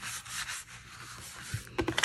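A hand rubbing and pressing across a closed cardstock card to make the glue inside grab: a dry brushing swish, strongest in the first half second, then fading, with a few light clicks of the paper near the end.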